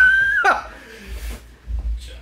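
A man laughing: a high-pitched squeal held for about half a second that then drops away in pitch.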